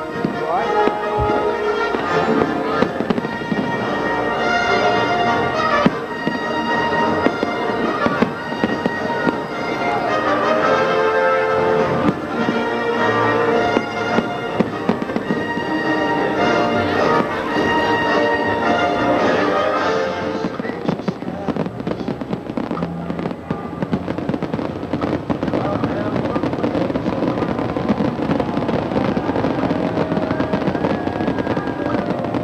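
Aerial fireworks going off, with music playing over them for about the first twenty seconds; after that the music fades and the crackle and bangs of the shells come through more plainly.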